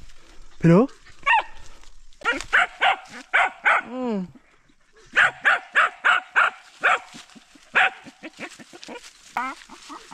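A dog barking in quick runs of short, sharp barks: a run of about half a dozen barks, a short pause, then another run of similar length, with a few single barks after.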